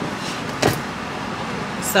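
A single short knock about two-thirds of a second in, as a handbag is moved about inside a car cabin, over a steady cabin hum.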